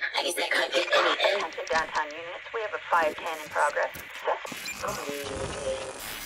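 A voice sample in the DJ mix, filtered thin like a radio with the bass cut away. Low end starts to come back in near the end as the track is brought back in.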